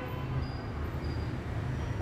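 A steady low rumble with a faint even hiss over it, with no speech.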